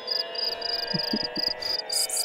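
Electroacoustic music: a high, cricket-like chirping pulse repeats about four times a second over sustained electronic drone tones, with a few short low notes about a second in.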